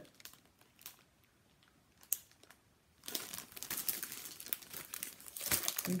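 Clear plastic packaging of a paper crafting kit crinkling as it is handled: a few light crackles at first, then continuous crinkling from about three seconds in.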